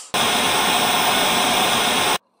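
Loud, steady TV-static hiss (white noise) that starts suddenly.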